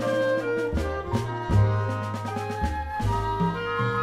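Jazz ensemble playing an instrumental passage: clarinet and flute holding long notes over upright bass and drums.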